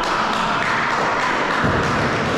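Players' shouts and hand-clapping ringing around a sports hall. Low thuds join in about one and a half seconds in.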